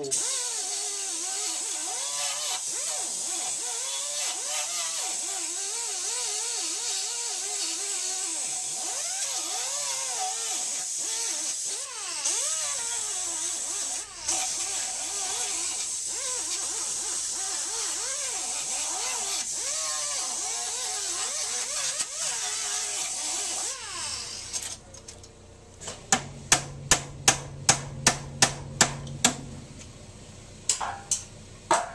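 Air-powered wire brush running against frame-rail steel, its pitch dipping and wavering as it is pressed into the metal, cleaning it to bare metal ahead of welding. It stops a few seconds before the end, and a quick run of about a dozen sharp, evenly spaced clicks follows, about three a second.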